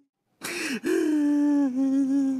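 A man crying in a comic wail. About half a second in there is a sharp gasping sob, then a long, steady, drawn-out cry.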